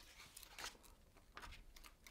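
Faint rustling and a few soft flicks of paper as a printed manual booklet is opened and its pages leafed through.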